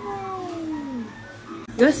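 A long meow-like cry falling in pitch over about a second, over background music.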